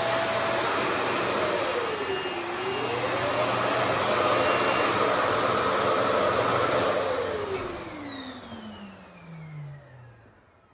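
RevAir reverse hair dryer's suction motor running with a loud, steady rush of air, set to tension level seven and heat level two. Its whine dips in pitch briefly about two seconds in and recovers. After about seven seconds the motor is switched off and winds down, the whine falling steadily in pitch as the air noise fades.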